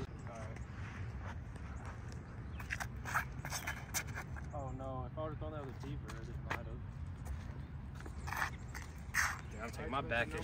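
A few scuffing footsteps and short scrapes on a tee pad over a steady low outdoor rumble, with a faint voice about halfway through.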